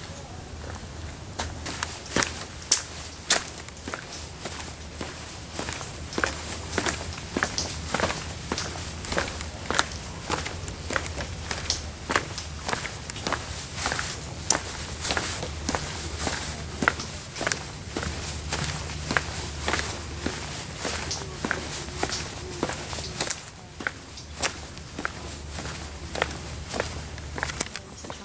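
Footsteps on a wooden boardwalk at an ordinary walking pace, a run of short irregular steps over a steady low rumble, easing off briefly near the end.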